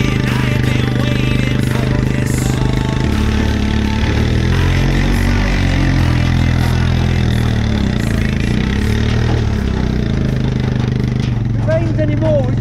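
Quad bike engine running under load as it drives through a flooded field, its pitch rising and falling in the middle of the stretch, with water spraying off the tyres.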